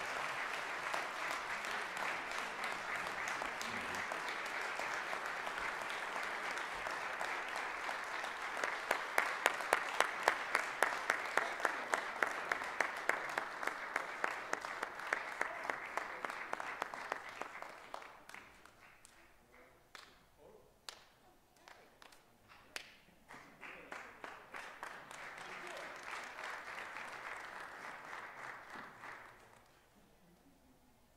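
Room full of people applauding. The clapping swells into a steady beat about eight seconds in, dies away after about 18 s to a few scattered claps, then a second, quieter round of applause runs until shortly before the end.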